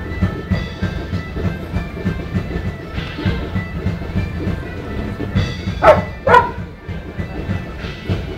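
Live medieval-style music with a steady drumbeat under held reedy tones. About six seconds in come two loud, short calls in quick succession, the loudest sounds here.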